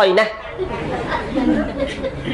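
A man speaking into a microphone breaks off just after the start, leaving a pause filled with faint chatter of other voices in a large hall.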